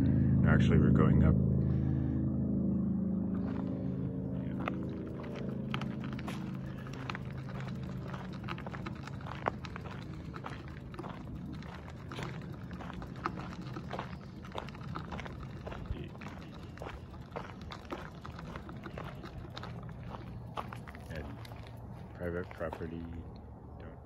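A low engine drone, loudest in the first second or two and slowly fading. Light, irregular crunches and ticks from a bicycle being walked on a gravel trail run under it.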